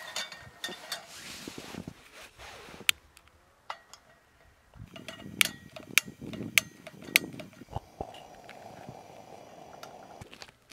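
A propane camping lantern being lit: several sharp igniter clicks amid handling noise, a pop about eight seconds in, then the steady hiss of its burning mantle.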